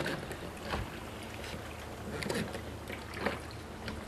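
Oars of a wooden lapstrake rowboat dipping and pulling through calm lake water, giving several short splashes over a faint steady wash of water.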